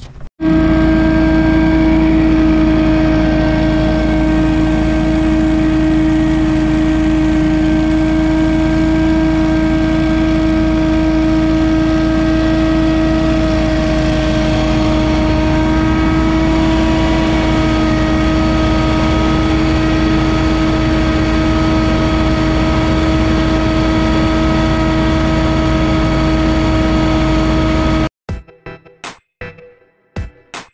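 Windstorm stand-on leaf blower running steadily as it is driven over the lawn, blowing grass clippings: a loud, unbroken engine drone with a constant whine from the fan.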